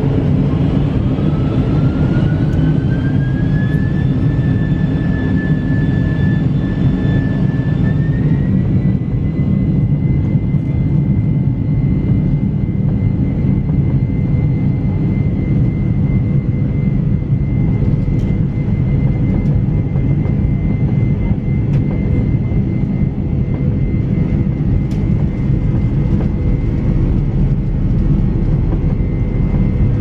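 Boeing 747's four General Electric jet engines spooling up to takeoff thrust, heard inside the cabin: a whine climbs in pitch over the first few seconds, steps up once more, then holds steady over a heavy, even roar as the aircraft rolls down the runway.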